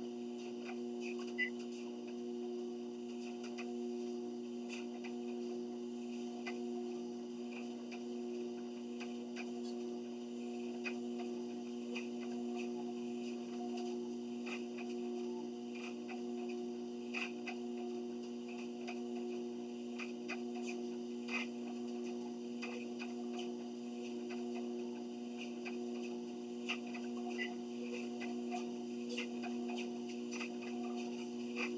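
Home treadmill running with a steady motor hum, with light clicks scattered through it.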